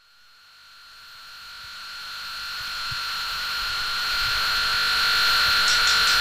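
Harsh noise fading in as the intro of a noisecore track: a hiss with two steady high whistling tones, growing steadily louder throughout.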